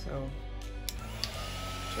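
Handheld heat gun switching on about a second in and then running as a steady rush of air with a thin whine.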